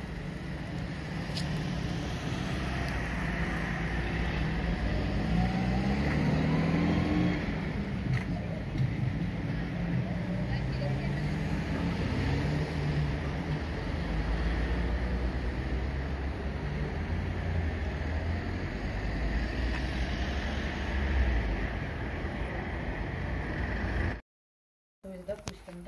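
City road traffic: cars and trucks driving past with a steady low engine rumble. About five to seven seconds in, an engine rises in pitch as a vehicle accelerates away. A deeper rumble from a heavy vehicle passing fills much of the second half.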